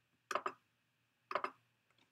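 Two short double clicks about a second apart, each one placing a stone on a computer Go board.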